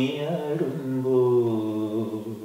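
A man singing unaccompanied in raga Abhogi, a melodic phrase that settles about a second in onto a long held note.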